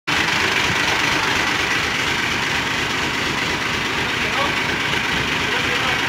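Steady, even running noise of an idling vehicle engine, a low rumble under a hiss, with faint voices in the background.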